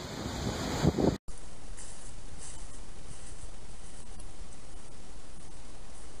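Steady, even hiss of outdoor background noise on a camera microphone in a wooded setting, starting after a sudden cut about a second in, with a few faint light ticks.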